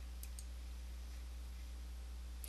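A computer mouse button clicked once, a faint quick double tick of press and release, over a low steady electrical hum.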